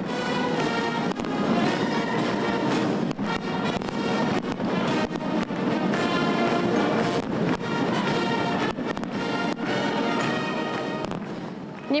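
Brass orchestral music playing under a fireworks display, with sharp firework bangs and crackles scattered through it. The music fades down slightly near the end.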